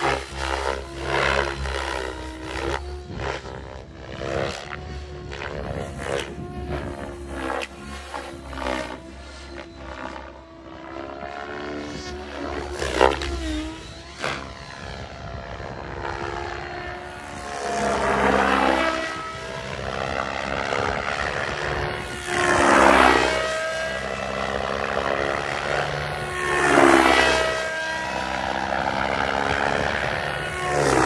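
A 700-size electric RC helicopter (OMPHOBBY M7) flying hard with its rotor head at about 2050 rpm. Its rotor and motor give a pitched whine that keeps rising and falling, with three loud swelling whooshes of the blades in the second half.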